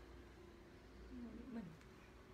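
Near silence: faint room tone with a low steady hum, and a brief soft, low sound falling in pitch a little past the middle.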